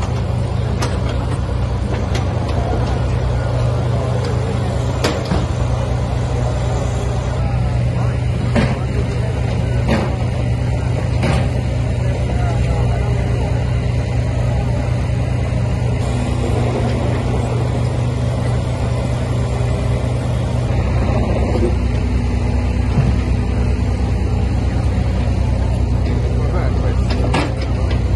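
Steady low diesel engine rumble from heavy machinery, such as the site's mini excavator, with occasional sharp knocks and clanks.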